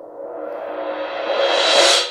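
Suspended cymbal rolled with a pair of heavyweight Marauder cymbal mallets. It swells in a steady crescendo from a soft hum to a full, bright wash and is loudest near the end.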